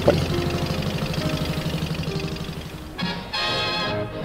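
Boat engine running with a steady low throb that fades down over about three seconds. Then guitar music comes in near the end.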